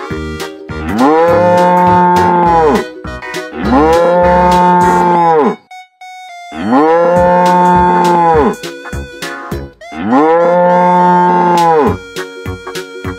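A cow mooing four times in long, drawn-out moos of about two seconds each. The calls have the same shape each time, like one recorded moo repeated, with background music and a beat between them.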